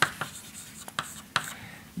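Chalk writing on a blackboard: a few sharp taps and short scratches as the chalk strikes and drags across the board.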